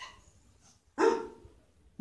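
A dog barking once, a single short bark about a second in.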